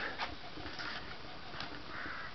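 Low steady background noise with a few light clicks and brief soft rustles.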